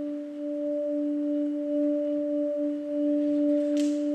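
A held keyboard drone of two pure, steady tones an octave apart, slowly swelling in volume as a musical intro.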